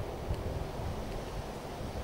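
Wind buffeting the microphone: a steady, fluctuating low rumble.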